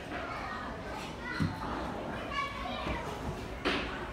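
Young children's voices and chatter in a large indoor hall, with a dull thump about a second and a half in and a sharper knock near the end.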